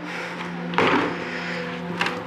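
A door handle and latch being worked to open a door, with a short rattling clatter about a second in, over a steady low hum.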